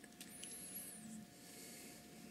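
Very faint room tone with a steady low hum, light handling noise and a brief faint high squeak about half a second in.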